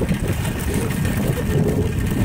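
Steady low rumble of wind buffeting the microphone and tyres rolling over rough, broken asphalt on a moving bicycle.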